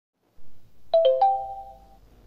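Three-note electronic chime, doorbell-like: three quick struck tones, middle, low, then high, that ring on and fade over about a second, preceded by a brief soft noise.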